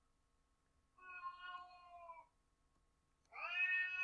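House cat meowing twice, long drawn-out meows, the first falling slightly in pitch and the second rising; the cat is throwing a fit to be let into the basement.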